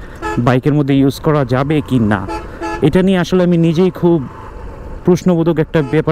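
Mostly a man talking over a steady low rumble of road and wind noise, with a brief vehicle horn toot among the talk.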